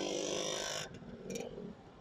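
Motorcycle engine running with a steady hum under wind hiss, which cuts off abruptly about a second in and leaves a faint background of traffic.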